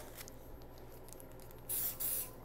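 Pen-turning lathe running steadily while a paper towel rubs CA glue on the spinning pen blank, then a short hiss of CA accelerator spray near the end, setting the coat.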